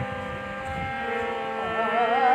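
Harmonium holding a steady sustained chord. About one and a half seconds in, a woman's singing voice enters on a long wavering note.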